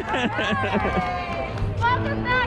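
Several people's voices calling out and talking over one another, with cheerful greetings between cast members and arriving guests.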